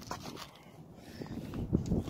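Faint handling noise as a radio-controlled car is carried, then a couple of soft low thumps near the end as it is set down on asphalt.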